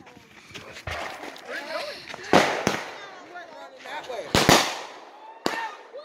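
Fireworks going off: several sharp bangs and crackling pops at uneven intervals, the loudest a close pair about four and a half seconds in.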